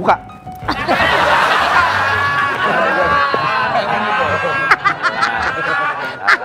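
A crowd of people laughing loudly together over music, breaking out about a second in and running for about four seconds before easing into speech.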